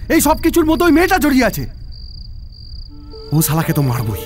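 Crickets chirping, a thin high trill that breaks on and off, with background music coming in near the end.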